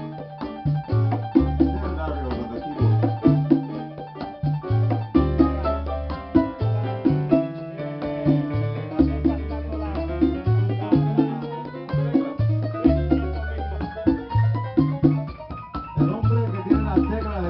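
Live mambo-style Latin jazz band playing: piano over a low figure repeating about every two seconds, with percussion. In the second half a melodic line climbs steadily higher in pitch.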